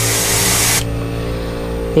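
Gravity-feed airbrush spraying paint through a hand-held stencil, a steady hiss that cuts off suddenly a little under a second in. A steady low hum runs underneath.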